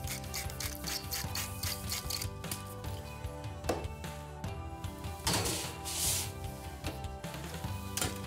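Background music, with a wooden pepper mill grinding in the first couple of seconds: a rasping run of short strokes. About five seconds in comes a brief scraping rush of noise.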